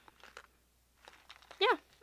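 A few faint soft ticks and rustles of handling, then a woman's short wordless vocal sound, like a 'hmm', about three-quarters of the way through.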